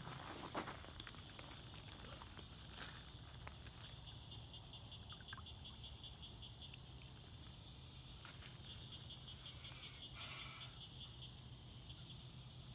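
Faint, steady high chirping of insects that pulses in stretches, with a few soft clicks and rustles in the first second.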